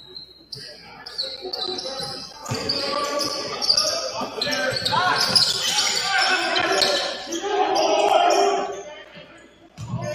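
A basketball dribbled on a hardwood gym floor, with sneaker squeaks and players and coaches shouting. It is loudest from about three seconds in, and the noise dies down just before the end.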